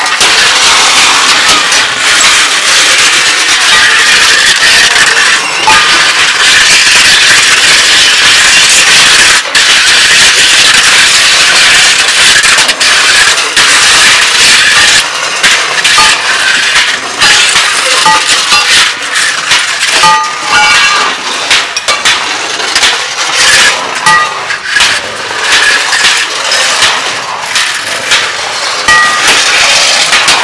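Improvised noise music played on scrap metal: a long metal pole and sheet metal scraped and dragged over brick paving and concrete, making a continuous loud, harsh scraping din. Clanks and short ringing metallic tones break in, more often in the second half.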